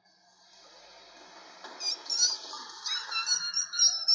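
Sound effect of rats squeaking: clusters of short, high squeaks from about two seconds in, over a low rustling noise.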